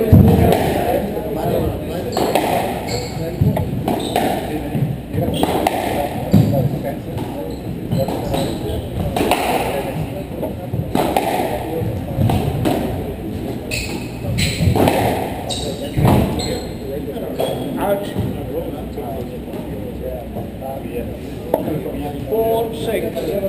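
Squash rally: the ball struck by rackets and cracking off the court walls, sharp hits at an uneven pace of roughly one a second.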